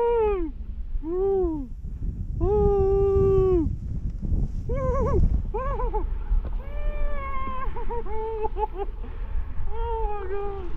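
A snowboarder whooping 'woo' over and over, in rising-and-falling calls with one long held note about three seconds in. A steady low rush of wind on the helmet camera and the board sliding on snow runs underneath.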